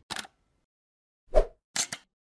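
Sound effects of an animated logo intro: a brief hissy flick just at the start, a loud pop about a second and a half in, then two quick snaps near the end.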